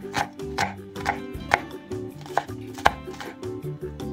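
Chef's knife chopping onion on a wooden cutting board: a run of sharp knocks, about two a second, that stops about three seconds in.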